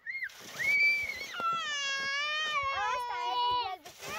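A small child's high-pitched voice: two short squeals in the first second, then a long drawn-out call held for over two seconds, with a second child's voice overlapping it near the end.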